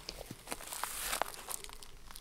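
Crackly rustling and crunching close to the microphone, with a run of small irregular clicks.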